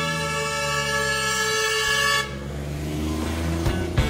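A truck air horn sounding one long steady blast that cuts off a little over two seconds in, leaving a low drone underneath.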